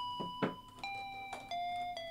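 Simple electronic synth tones from music-production software, three sustained notes in turn, each a little lower than the last.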